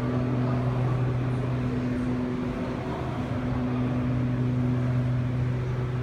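Steady low mechanical hum, a constant drone over a continuous background noise, with no breaks or sudden sounds.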